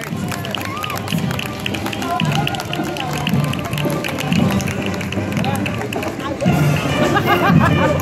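Marching band music with a quick, steady drum beat, mixed with crowd chatter along the street; the voices grow louder near the end.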